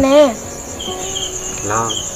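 Insects trilling steadily at a high pitch, with a few short chirps, behind a conversation.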